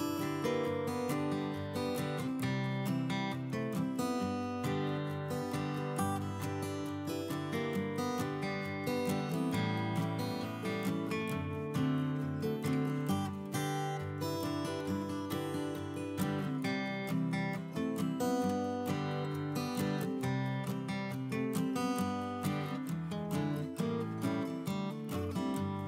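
Background music led by a strummed acoustic guitar, at a steady level.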